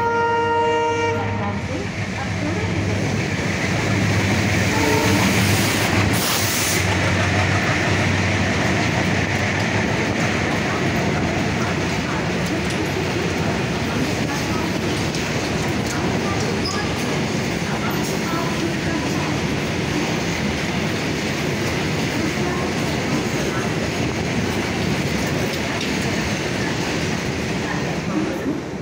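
Freight train passing at speed behind WDM3D and WDG-3A diesel locomotives. The locomotive horn sounds until about a second and a half in, and the diesel engines' hum passes in the first several seconds. Then the long rake of covered wagons runs by with steady wheel-on-rail noise.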